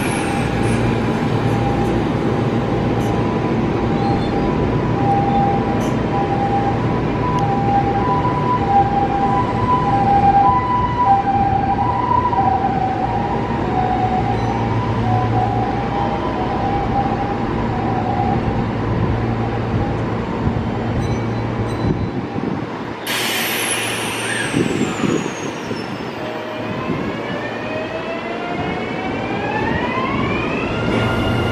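Electric commuter trains at a station platform: a steady running rumble with a pulsing motor hum for most of the time. Near the end comes a sudden burst of noise with a high falling whine, then the whine of the traction motors rising in pitch as a train accelerates away.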